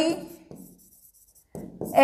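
A stylus writing on the glass of an interactive touchscreen board: faint, soft scratching and tapping strokes. The end of a woman's word is heard at the very start, and her voice comes back at the very end.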